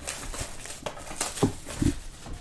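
Cardboard trading-card box being handled and turned over in the hands: rustling and scraping of the cardboard, with a couple of dull knocks in the second half.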